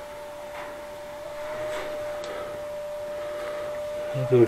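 A steady whine held at one pitch, with a few faint light clicks.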